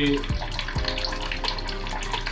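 Kitchen tap running into a sink as a drinking glass is washed, with two soft knocks in the first second. The tap gives only a weak flow: the water pressure is low.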